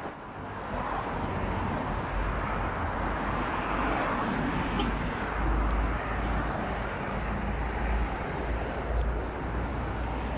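Steady road traffic noise from cars driving past on a multi-lane road, with a continuous low rumble.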